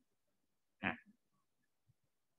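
A single short breathy snort from the man, about a second in, between faint small ticks.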